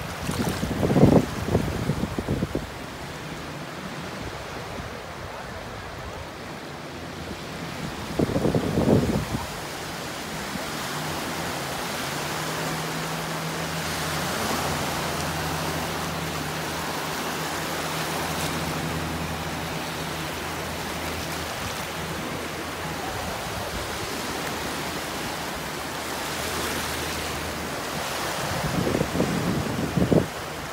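Small Gulf of Mexico waves washing onto a sandy shore in shallow water, a steady rushing wash. A few short gusts of wind buffet the microphone: near the start, about nine seconds in, and near the end.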